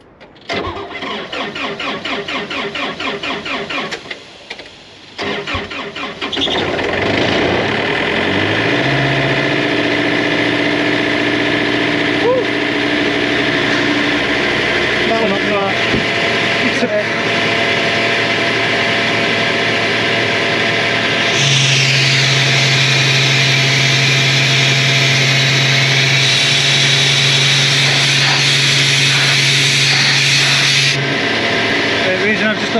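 Portable tow-behind air compressor's diesel engine being cranked by its starter in a fast rhythmic churn, pausing briefly, cranking again and catching at about six seconds, then settling to a steady idle. About two-thirds of the way through it speeds up to a higher, louder steady note with a loud hiss added.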